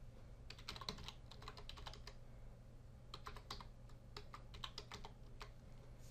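Faint typing on a computer keyboard: two runs of quick keystroke clicks, the first starting about half a second in and the second from about three seconds in, stopping shortly before the end.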